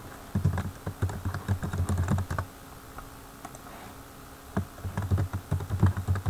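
Typing on a computer keyboard: two quick runs of keystrokes with a pause of about two seconds between them.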